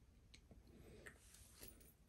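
Near silence, with a few faint clicks from a solid silver chain bracelet's links and lobster clasp as it is fastened around a wrist.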